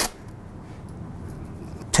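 A short rip of masking tape being pulled off its roll right at the start, then faint room noise with quiet handling of the tape.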